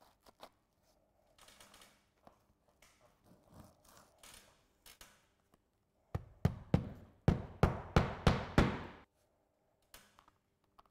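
A hammer driving nails through bitumen roofing shingle strips: about ten quick, sharp blows, three or four a second, starting about six seconds in. Before the blows there is faint rustling of the strips being handled.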